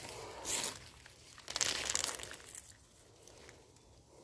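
Dry rustling and crunching from hands picking nuts out of dry leaf litter on the ground, in a few short bursts, then quieter.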